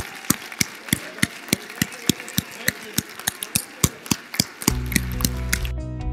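People clapping in a steady rhythm, about three claps a second, with faint voices underneath. Near the end the claps give way to instrumental music with long held notes.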